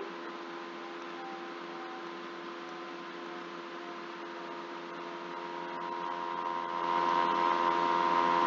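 Steady electrical hum with several held pitches over a hiss, which the uploader takes for computer noise picked up by the microphone. It grows louder over the last few seconds.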